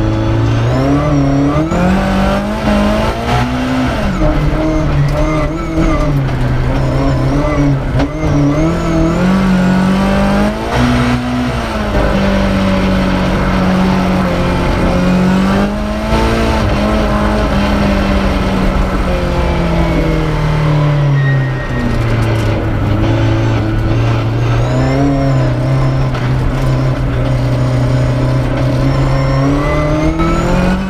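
A BMW rally car's engine driven hard on a stage, heard from inside the cabin. The revs climb and fall again and again through gear changes and slowing for corners.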